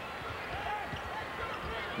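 A basketball bouncing on a hardwood court as it is dribbled upcourt, with low thumps repeating over the arena's background noise.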